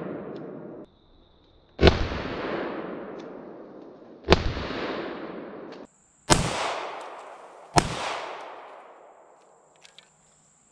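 Four shots from a Bul Armory SAS II Ultralight Comp 9mm compensated pistol, spaced one and a half to two and a half seconds apart. Each crack is followed by a long echo that dies away through the woods.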